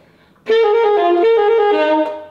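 Alto saxophone playing a short phrase, G, F, G, F, D, starting about half a second in. Each F is fully fingered and blown through, so it sounds out as a full note rather than a ghost note.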